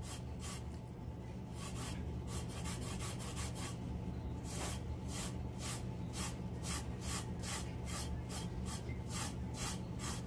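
Gloved hand rubbing back and forth over a glitter-coated tumbler, burnishing the glitter flat. The strokes are short and even, about three a second.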